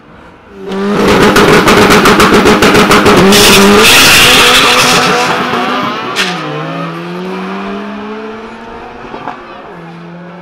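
Drag cars launching off the start line at full throttle: the engines come in loud about a second in with a rapid stuttering crackle, then a burst of tyre squeal. The engine notes then fade down the strip, the pitch dropping and climbing again with a gear change.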